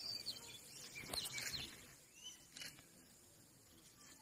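Faint bird chirps and short whistled calls in forest ambience, busiest about a second in, with a few soft clicks.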